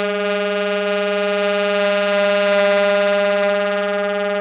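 One long, loud held instrumental note, low in pitch and dead steady, from the duo's tenor saxophone or violin.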